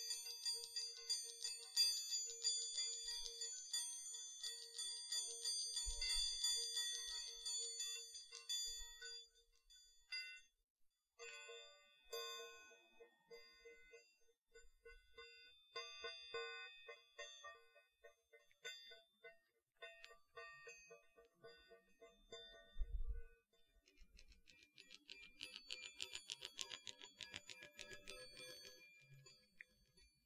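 Chiming Baoding balls (Chinese health balls) turned in the hand, their inner chimes ringing in a steady, pulsing tone. The ringing drops out briefly about ten seconds in and then resumes. Near the end it turns into a fast, dense clicking rattle, and a couple of low handling thumps sound along the way.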